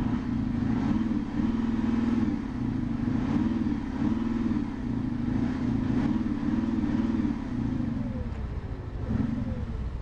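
Audi SQ7's 4.0 TDI twin-turbo V8 diesel running, heard at the quad exhaust tips, revved in a series of short rises and falls in pitch. The revs slide back down near the end.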